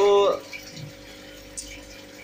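A man's word ends in the first half second. After that there is a steady background of aquarium water circulating, with a constant pump hum.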